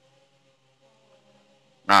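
Near silence: room tone with a faint steady hum, then a man's voice starts loudly near the end.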